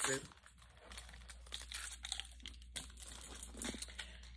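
Soft rustling and crinkling with scattered light clicks as small items are handled and pulled out of a handbag.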